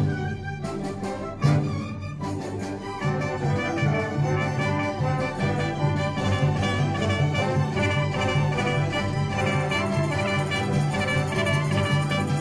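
Symphony orchestra playing a classical piece, with violins and brass together. Two sudden loud accented chords come in the first second and a half, then the music goes on with a rhythmic pattern of repeated low notes.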